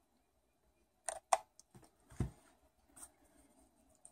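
A few faint clicks and taps from a hot glue gun and a small plastic clip being handled, with a soft thump about two seconds in as the glue gun is set down on the table.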